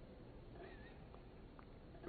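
Near silence: room tone in a pause of speech, with one faint, brief wavering high tone a little over half a second in.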